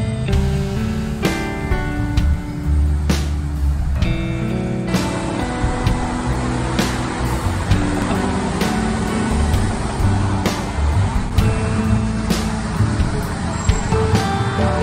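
Background instrumental music with sustained notes and a regular beat; road traffic may lie faintly beneath it.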